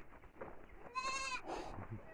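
A goat bleats once, a short, wavering, high-pitched call about a second in.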